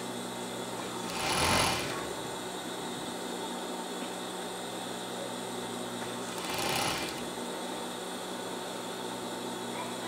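Siruba 504M2-04 industrial overlock machine with its motor humming steadily, stitching in two short runs: about a second in and again near seven seconds.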